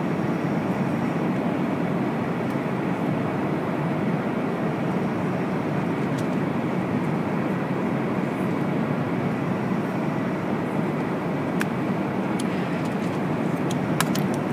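Steady airliner cabin noise at cruise: an even, unbroken rush of airflow and engines heard inside the cabin, with a few faint clicks near the end.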